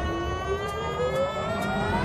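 Dance-routine music in a build-up: a synthesized riser sweeping steadily upward in pitch, with a held high tone above it and only light ticks in place of the bass beat.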